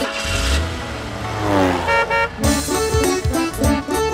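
Cartoon bus sound effects in a children's song: a short rush and a low engine-like hum, with a tone sliding down in pitch. Backing music with a bouncy beat comes back in about two seconds in.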